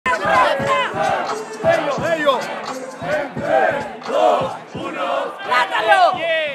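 A crowd of men shouting and cheering, many loud voices overlapping.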